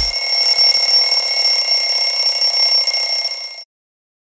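Alarm clock ringing with a steady, high-pitched ring that cuts off suddenly about three and a half seconds in.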